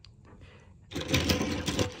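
Rapid clicking rattle of a push-along toy train engine and tender being handled on a plastic bucket lid, starting about a second in.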